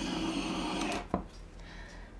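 Handheld torch flame hissing steadily as it is passed over wet acrylic pour paint to bring up cells, cut off about a second in, with a single click just after.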